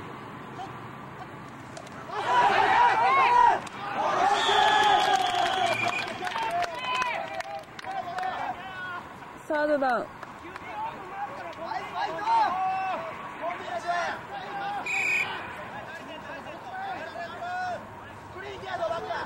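Several voices calling and shouting over general chatter, loudest in bursts a few seconds in, with a brief high steady tone near the end.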